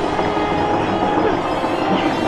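Toilet brush scrubbing the inside of a porcelain toilet bowl: a steady, close scraping and rubbing, with music playing underneath.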